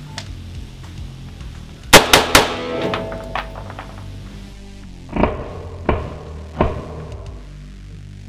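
Colt AR-15 firing three 5.56 M855 rounds in quick succession, about a quarter second apart, about two seconds in, each shot ringing on in the range. A few seconds later come three duller thuds about 0.7 s apart, over background music.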